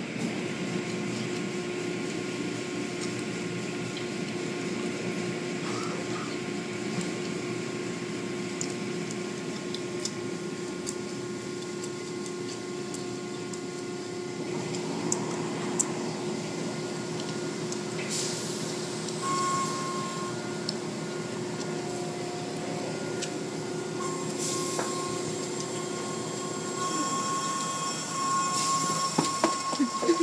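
Automatic car wash running: rotating cloth brushes working over a car under water spray, with a steady motor hum and spray hiss. The hum's steady tone cuts off near the end, followed by a few louder knocks.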